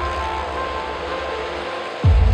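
Background music over the steady engine noise of motorcycles riding the wall of a Well of Death drum. The music's deep bass fades and drops out just before the end.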